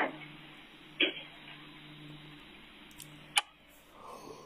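A few short knocks and clicks over a steady low room hum, ending in one sharp click as a wall light switch is flipped off.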